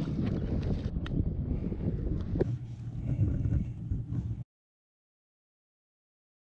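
Wind buffeting the microphone, a low rumbling noise broken by a few sharp knocks, which cuts off abruptly to silence about four and a half seconds in.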